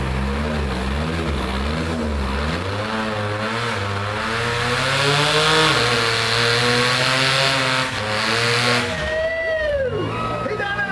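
Rock bouncer buggy's engine revving in quick rises and falls, then held at high revs with the wheels spinning on the rock, before letting off about nine seconds in.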